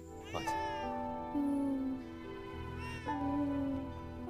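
Newborn baby crying: two short wails, one about half a second in and another around three seconds, over soft background music.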